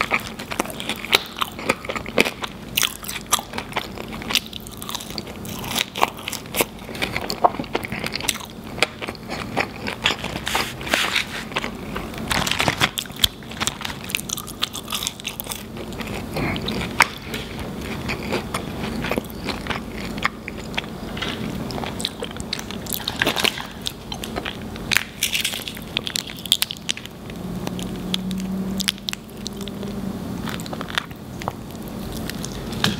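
Close-miked chewing and biting of fries smothered in melted cheese and sauce, and of a cheeseburger: a dense, irregular run of sharp wet mouth clicks and smacks. A short low hum comes near the end.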